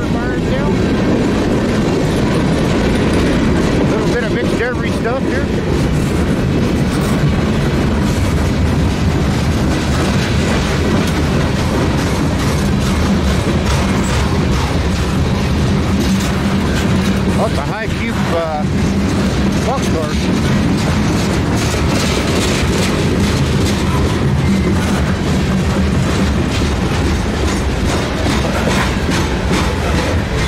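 Freight cars of a mixed freight train rolling past close by as it climbs a grade, its power all at the head end: a steady, loud rumble of steel wheels on rail.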